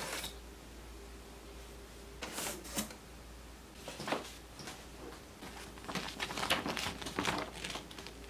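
Paper instruction sheets rustling as they are lifted out of a cardboard box and unfolded by hand, in several short bursts with a busier stretch near the end.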